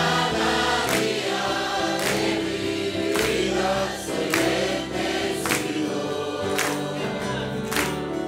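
Church congregation singing a Spanish hymn together, with a sustained bass line and a sharp percussive beat about once a second.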